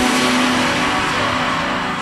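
Electronic trance music in a breakdown: the kick drum drops out, leaving a whooshing synth noise sweep that dulls and fades over faint held synth chords.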